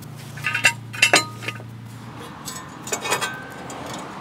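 Several light metallic clinks and taps of steel hardware being handled: a cluster in the first second or so and another about three seconds in. A low steady hum underneath stops about two seconds in.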